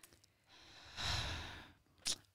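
A woman's audible sigh into a close studio microphone: one soft breath out that swells about half a second in and fades over about a second.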